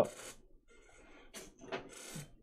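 Soft rustling with a couple of light clicks about halfway through, from digging a scoop out of a tub of drink powder.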